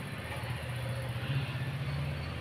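A steady low mechanical hum, like a running engine, over faint background noise; it grows slightly louder about half a second in.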